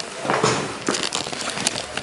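Irregular rustling and crackling handling noise from a handheld camera being swung down and lowered, with scattered short clicks.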